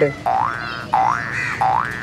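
Three short cartoon 'boing' sound effects, each a quick rising glide in pitch, evenly spaced and alike in shape.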